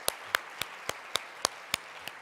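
One person clapping close to a microphone, sharp even claps nearly four a second, over softer audience applause.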